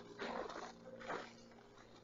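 Faint footsteps crunching on moss, two soft crunches about a second apart, like stepping on crinkled-up paper.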